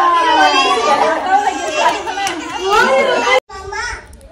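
Many girls and children chattering over one another, a dense tangle of overlapping voices that cuts off suddenly about three and a half seconds in.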